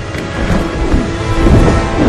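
Film sound of a dragon's fire blast: a loud, deep rush of flame noise that swells about half a second in, with music playing over it.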